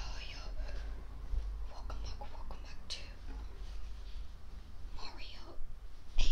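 A person whispering softly close to the microphone, in airy, hissy bursts with short pauses between.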